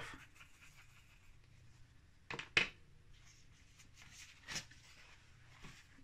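Faint room tone with a few short scratchy strokes, the loudest pair about two and a half seconds in and more near the four-second mark: a paintbrush being worked in paint on a palette.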